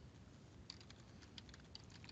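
Faint computer keyboard typing: about five soft keystrokes, starting a little under a second in, over near-silent room tone.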